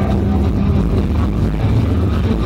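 Live rock band playing loud, with a heavy, muddy low end of bass and drums and no singing in this stretch, as recorded by a camera in the audience.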